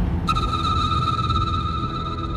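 Dramatic background score for a tense reaction shot: a low rumbling drone, joined shortly after the start by a held, steady high electronic tone.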